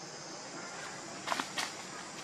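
Steady outdoor background hiss, with two short crackles of dry leaves about a second and a half in, like footsteps on leaf litter.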